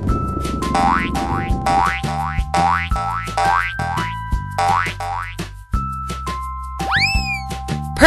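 Upbeat children's background music with cartoon 'boing' sound effects: a short rising boing about once a second, then a longer swooping glide near the end.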